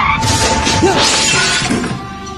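A shattering crash like breaking glass that lasts most of two seconds and fades near the end, over music with one steady held note.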